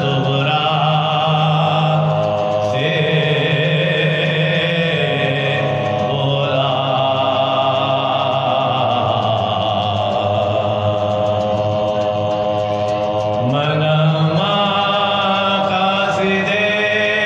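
Soz khwani, Shia mourning elegy chanted as long held vocal notes that step to a new pitch every few seconds, with a rising slide near the end.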